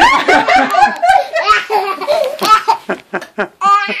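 A baby laughing hysterically, belly laughs in quick repeated bursts, with a high squeal near the end.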